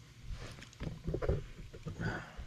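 Soft knocks and rustling as a handheld camera is moved, with a short spoken word about a second in.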